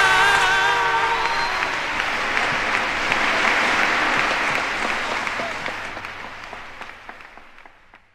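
Audience applauding at the end of a song, fading away gradually, as the singer's last held note with vibrato ends about a second in.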